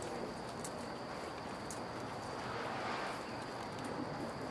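Quiet outdoor ambience: an even background hiss with a faint steady high-pitched tone and a few faint ticks.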